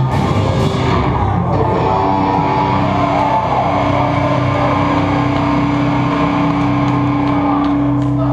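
Hardcore punk band playing live with distorted guitars and drums. The drum and cymbal hits thin out about a second in, leaving the guitars holding a steady ringing chord as the song ends.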